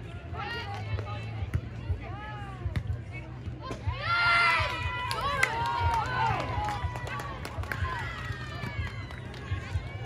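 Several high voices calling out and cheering at the end of a beach volleyball rally, loudest in a burst about four seconds in, with a few sharp knocks scattered through.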